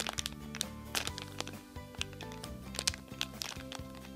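Clear plastic packaging bag crinkling and crackling in many short ticks as a squishy foam toy is squeezed inside it, over background music.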